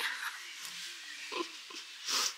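A woman's low, drawn-out hum, 'hmm', wavering slightly in pitch, with a short voiced sound about a second and a half in, over a faint steady hiss of outdoor air.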